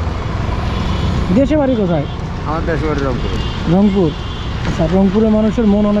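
Men talking, in short phrases with pauses, over a steady low rumble of road traffic.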